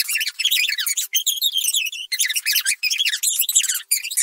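Cartoon character voices played back at four times speed, raised into a rapid, squeaky chipmunk-like chatter with brief gaps between bursts.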